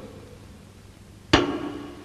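A single sharp struck sound about a second into the clip, ringing on with a pitched tone that fades away.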